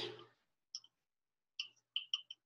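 A few faint, small clicks in near-quiet: one a little under a second in, then a quick run of four or five near the end.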